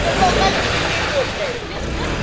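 Toyota Land Cruiser Prado SUV driving slowly past close by, a steady rumble of engine and tyres on a wet road, with voices calling out over it.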